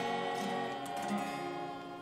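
Small vocal ensemble holding the final note of the hymn over a strummed acoustic guitar, with a couple of strums about a second in, the sound dying away near the end.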